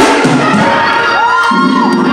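Organ music with held chords, a thump at the start, and a voice gliding up and down over it while the congregation cheers and shouts.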